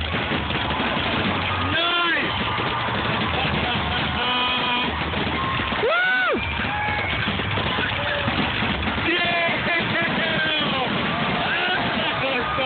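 Spectators whooping and shouting over the continuous rumble and crackle of aerial fireworks shells bursting in a dense finale. One long rising-and-falling "whoo" comes about halfway through.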